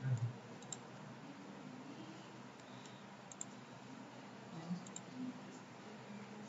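A few sparse, sharp clicks of a computer mouse over a steady low hiss, with a soft low thump right at the start.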